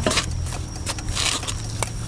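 Handling noise from gear in a bag: short rustles and scrapes, with a sharp click a little before the end, over a low steady hum.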